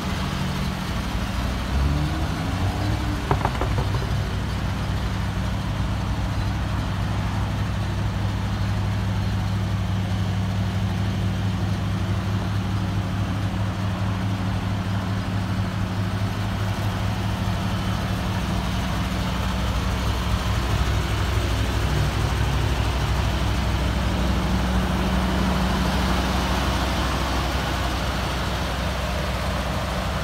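1977 Ford Bronco's 302 V8 idling steadily just after a cold start.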